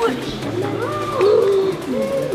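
Boys' voices hooting a drawn-out "ouuuh", the pitch sliding up and down in arching calls, strongest in the middle.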